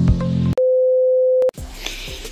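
The tail of upbeat intro music cuts off about half a second in. A single loud, steady electronic beep holds one tone for about a second, then stops dead and gives way to faint outdoor background.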